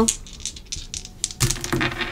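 A quick run of light clicks and taps from hands handling small objects on a tabletop.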